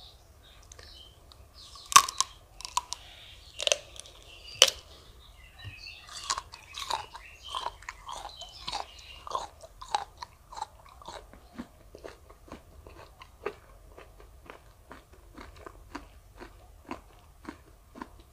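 Raw prickly pear cactus pad being bitten and chewed close to the microphone. A few loud, crisp crunching bites come in the first five seconds, then steady chewing of the mouthful that slowly grows fainter.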